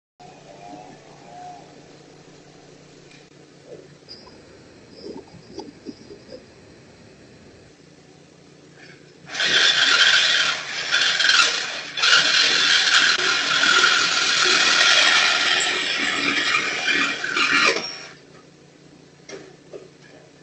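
A saw cutting through the metal exhaust pipe under a car to take off its catalytic converter. The sawing starts about halfway through, breaks off for a moment, then runs steadily until it stops shortly before the end.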